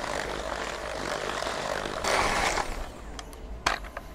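Electric hand mixer running with its beaters in a thick chocolate-hazelnut batter. It gets briefly louder, then stops about three seconds in, and a couple of sharp clicks follow.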